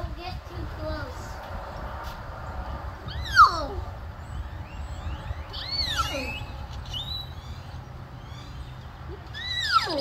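Bird calls: a few loud, whistled squawks that arch up and then sweep down in pitch. The loudest comes about three seconds in, with others near six seconds and near the end, over a steady low rumble.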